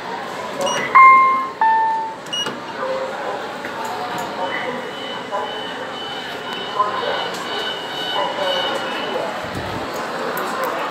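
Kone lift arrival chime: two ringing electronic tones about a second in, a higher ding and then a slightly lower one, each dying away, signalling the car arriving at the landing.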